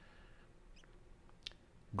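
Quiet room with a few faint, short squeaks and clicks, one sharper click a little before the end.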